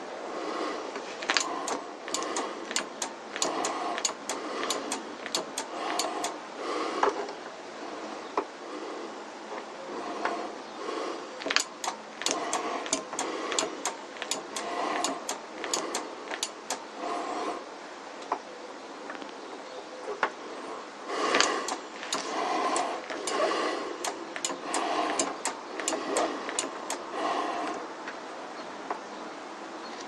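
Brake bleeding at a motorcycle's front brake caliper: a run of sharp clicks mixed with soft squelching as fluid and air are worked out through the bleed nipple and tube. It comes in runs of several seconds, with short lulls about a third and two-thirds of the way through.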